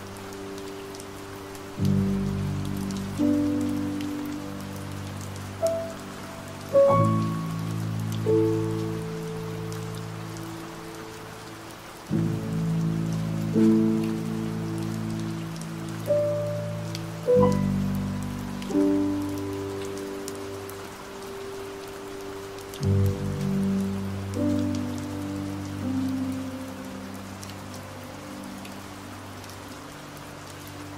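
Slow, soft piano music, chords and single notes struck every second or so in phrases a few seconds apart and left to ring out, over a steady background of rain.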